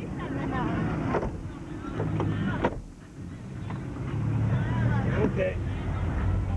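A van door pulled shut, with a sharp knock about two and a half seconds in, over a low steady hum of the idling van and indistinct voices inside the cabin.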